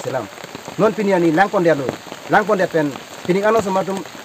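A man speaking in short phrases, in the Karbi language, over a steady hiss of falling rain.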